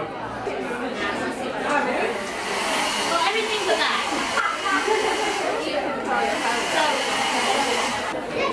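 A hair dryer running, a steady rushing hiss that comes in about two seconds in, over the chatter of people talking in a busy room.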